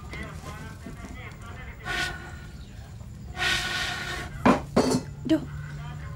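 A woman blowing a long breath through a bamboo blowpipe into a wood fire, then coughing three times in quick succession, short and loud, as she chokes while trying to fan the fire.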